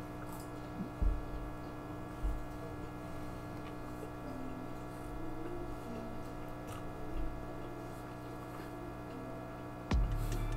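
A steady low electrical hum, with a few soft low thumps and faint clicks of a mouthful of noodles being chewed.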